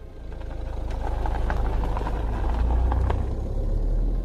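Taxi cab engine running with a low rumble that swells in over the first second and then holds steady, with a few light clicks midway.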